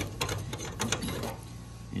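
Quick run of small metal clicks and ticks as a hex coupling nut and washer are handled and spun by hand onto a threaded steel rod; the clicks come thickly for about the first second, then thin out.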